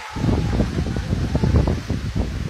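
Wind buffeting a phone's microphone outdoors: an irregular low rumbling that sets in suddenly at the start and keeps gusting.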